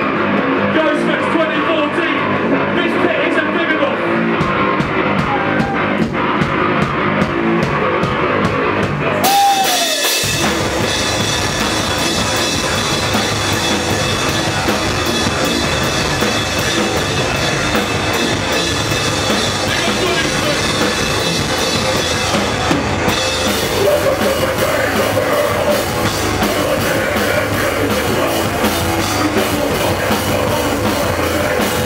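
Hardcore band playing live through a PA: a thinner opening with a steady beat, then the full band with drums and bass comes in heavily about ten seconds in.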